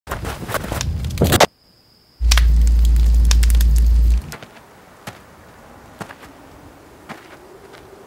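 Music-video sound design with no music: a short rushing burst, a brief hush with a faint high tone, then a loud deep low hum for about two seconds. After the hum cuts off, a low crackle with scattered sharp pops runs on, like a small fire burning.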